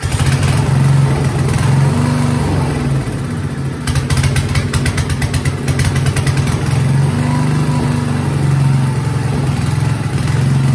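Briggs & Stratton single-cylinder engine on a small 5 hp Coleman generator catching on the starter-cord pull and running steadily, with its choke set for the start. A rapid clatter joins the engine between about four and six seconds in, and the pitch wavers slightly a couple of times.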